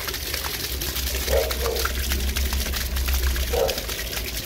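Water gushing in a heavy, steady stream out of an open PVC drain pipe and splashing onto the ground, with a low rumble underneath: the drain's backed-up water rushing out once the hydro jetter has broken through the blockage.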